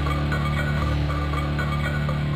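Electronic theme music over the opening credits: a steady low drone under a repeating pattern of higher notes.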